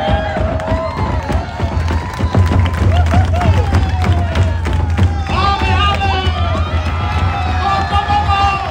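Fast drumming with sticks on large drums on stands, with shouting and cheering from the crowd over it. The cheering grows busier about five seconds in.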